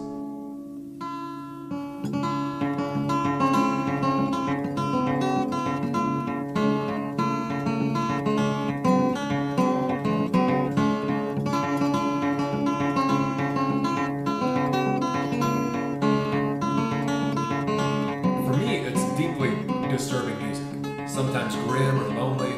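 Solo acoustic guitar music: a fingerpicked melody over ringing low bass notes, starting about a second in. A voice comes in over it near the end.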